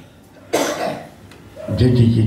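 A man coughing once close to the microphone, a sudden harsh burst about half a second in that dies away within half a second.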